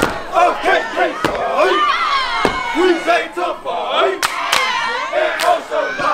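A group of young men shouting and chanting loudly over one another during a step routine, with several sharp impacts from the stepping at uneven intervals of about a second.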